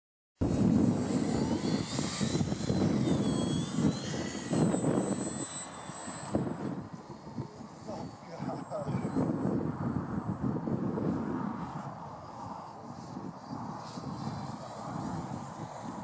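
Motor and propeller of a radio-controlled eagle model plane whining, the pitch rising and falling over the first few seconds as it is launched and climbs away, then a fainter steady drone. Heavy wind rumble on the microphone.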